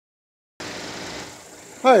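Four-cylinder engine of a 2016 Chevy Equinox idling quietly under the open hood, a faint steady hum that starts about half a second in. A man says "Hi" near the end.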